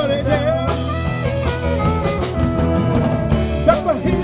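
Live rock band playing an instrumental jam, with drum kit, electric bass, electric guitar and saxophone.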